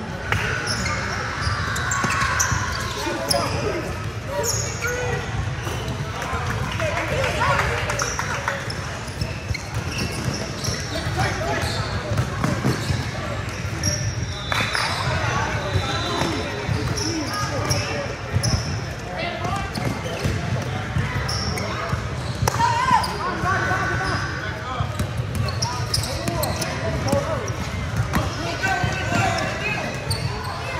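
Indoor basketball game on a hardwood court: a ball bouncing, many short high sneaker squeaks, and players and onlookers calling out indistinctly, all echoing in a large gym hall.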